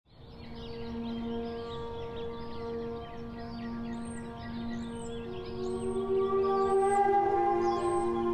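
Ambient intro music: a held drone of several steady tones that swells and adds a higher tone about halfway through. Busy high chirps and a handful of short, repeated high whistles sound over it.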